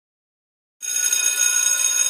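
Silence for nearly a second, then a school bell sound effect starts: an electric bell ringing steadily.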